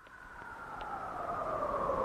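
The opening of a Bollywood film song's intro fades in with a hiss and a couple of tones that slowly fall in pitch, growing louder throughout.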